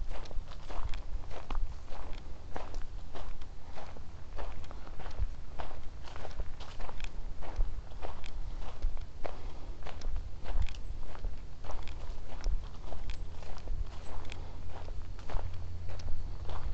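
Footsteps of one person walking at a steady pace on a leaf-strewn dirt woodland trail, about two steps a second, over a low steady rumble.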